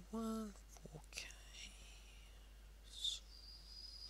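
A man's quiet voice thinking aloud: a short hummed "mm" near the start, then faint whispered muttering and breaths.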